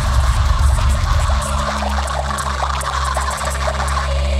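Electronic music played live: a deep bass under a crackling, scratchy noise texture with scattered clicks. About a second and a half in, the pulsing bass gives way to a steady held drone.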